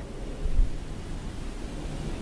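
A pause in speech holding steady low background rumble and faint hiss, with a brief swell of rumble about half a second in.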